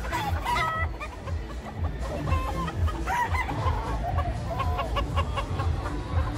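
Gamefowl roosters calling in short, repeated clucks and crows, over background music with a steady beat.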